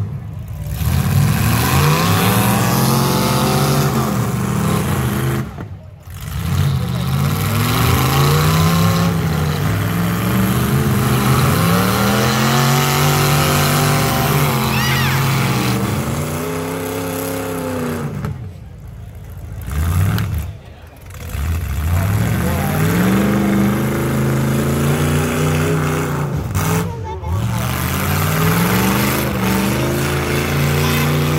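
Full-size demolition derby cars' engines revving hard over and over, the pitch climbing and falling as the cars accelerate, back up and go again.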